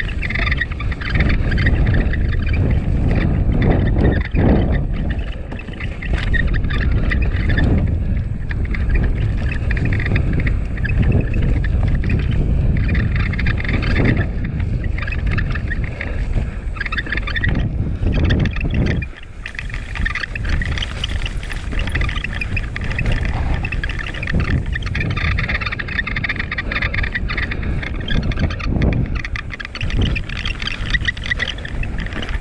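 Mountain bike riding fast down a rough, muddy, rooty trail: a loud, continuous rumble of tyres and frame on the ground, with knocks over bumps and roots. A rattling squeak from the GoPro camera mount runs through it, set off by the trail vibration.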